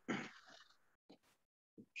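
A voice trailing off in the first half-second, then near silence as the video-call audio drops out, broken only by two faint blips.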